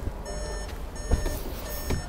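Repeated electronic beeping: three short beeps a little under a second apart, each a stack of steady high tones. Two light knocks come about a second in and near the end.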